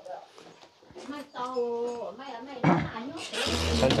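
A person's voice talking, then a loud rustling burst of noise in the last second or so.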